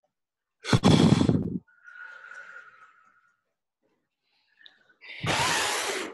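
Breath blown straight into a microphone: two loud gusts of blowing, about a second in and again near the end, with a softer, fainter exhale between them.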